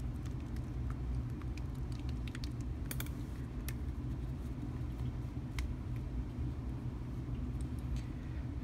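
Steady low background hum, with a few small sharp clicks as a small plastic paint jar is unscrewed and its lid set down on the table.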